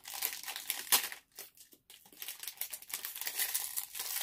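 A shiny foil toy packet crinkling and rustling as it is pulled open by hand, with one sharp snap about a second in, a short lull, then more crinkling.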